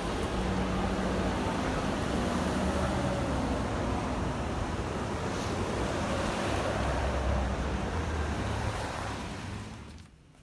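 Street traffic: cars driving past on a wet road, a steady rushing noise with a low rumble, likely with some wind on the phone's microphone. It fades down in the last second.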